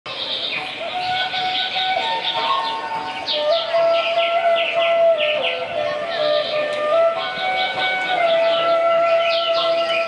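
Traditional wind-instrument music: a flute-like pipe playing a slow melody of long held notes that step up and down, with quick high chirping calls over it.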